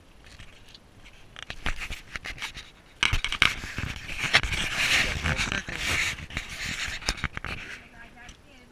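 Action camera being handled close to its microphone: fingers rubbing and knocking on the camera body, a loud rough scraping noise with many sharp clicks that starts about three seconds in and dies away near the end.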